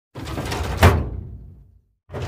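A title-card sound effect: a short sliding rush of noise ending in a loud slam just under a second in, which then dies away over about a second.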